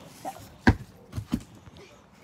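A solid thump about two-thirds of a second in, followed half a second later by two lighter knocks close together: an object striking the ground and knocking again.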